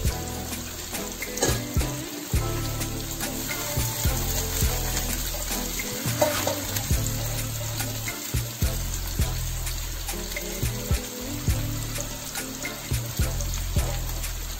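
Duck meat frying in oil in a wok: a steady sizzle with many short crackling pops, over a steady low hum.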